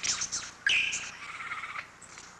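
Superb lyrebird singing: a quick run of sharp chirps, then a held high note of about a second, part of its song mimicking other birds' calls.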